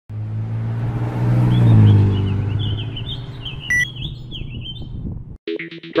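A motor vehicle drives past, loudest about two seconds in and dropping in pitch as it moves away, with birds chirping and a short electronic beep just before the four-second mark. The sound cuts off abruptly near the end.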